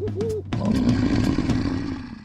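Animal sound effects in a logo jingle over drum hits: two short rising-and-falling hoots, then from about half a second in a long rough roar.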